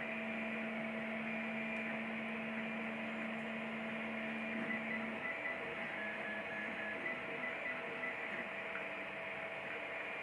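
Wanhao Duplicator i3 3D printer running mid-print: a steady hum from its fans and stepper motors. A low motor tone holds for about five seconds and then drops away, and a few short higher tones follow about six seconds in.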